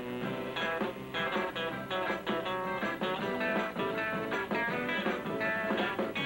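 Up-tempo, guitar-led record playing on a jukebox, with quick plucked guitar notes over a steady beat.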